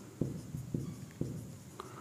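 Marker writing on a whiteboard: a few faint, short strokes of the felt tip on the board, about four in two seconds.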